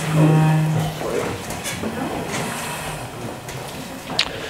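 A group of people getting up from their seats in a room: chairs shifting and clothes rustling, with indistinct voices. A steady drawn-out tone sounds for about the first second.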